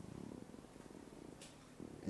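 A man's drawn-out hesitation "euh" trailing off into a low, rattling creaky voice, then a brief breathy hiss just before he speaks again.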